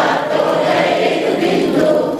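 A group of listeners singing a line of a Hindi devotional song together, many voices blended into one.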